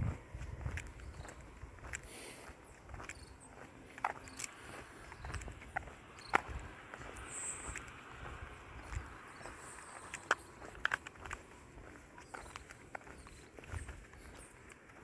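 Footsteps of someone walking on an asphalt road, heard as irregular light clicks and scuffs, with a low rumble now and then.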